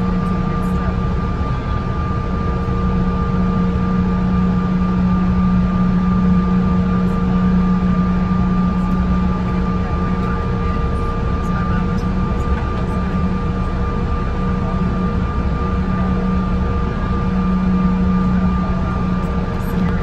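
Airliner's engines at taxi power heard from inside the cabin: a steady drone with a low hum and a fainter higher whine over rumble, holding level with no power-up.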